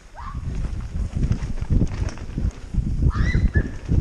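Enduro dirt bike being ridden on a muddy trail, heard through a helmet-mounted camera's microphone: a low, uneven rumble of engine and wind buffeting that surges irregularly.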